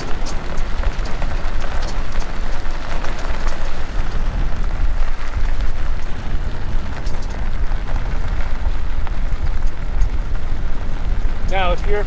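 Vehicle rolling along a dirt and gravel road: steady tyre crunch with many small crackles over a continuous low rumble.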